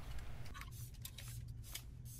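Faint handling of a clothes iron pressing fabric on a wooden table: a soft rustle and a few light ticks as the iron is worked and lifted away, over a low steady hum.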